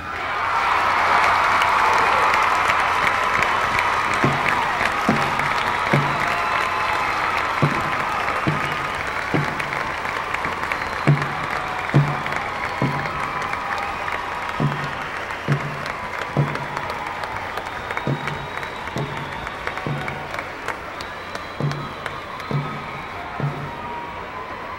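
Large crowd applauding and cheering, loudest at first and slowly fading. From a few seconds in, a steady low drum beat, a little over one hit a second, runs under it: marching band drums keeping a beat.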